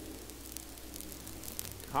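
Faint engines of dirt-track modified race cars running slowly under a caution, over a low hiss with light crackle.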